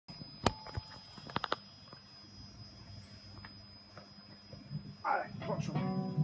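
Handling noise as the camera is set up: a few sharp clicks and knocks, the loudest about half a second in and a quick cluster of three about a second later. A faint low hum continues under it, and a brief voice is heard near the end.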